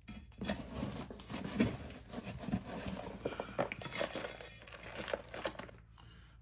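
Metal scoop scraping and digging through crumbled, clumpy fertilizer spike powder in a cardboard box. The powder pours into a plastic tub in an irregular run of small crunches and scrapes.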